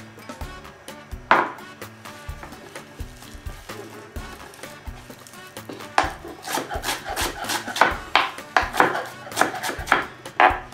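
Parsley being chopped with a mezzaluna on a cutting board: a single knock about a second in, then a quick run of chopping strokes from about six seconds in, over background music.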